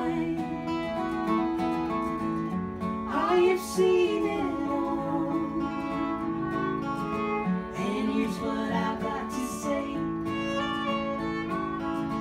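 Live acoustic folk music played on two acoustic guitars and a fiddle, with singing.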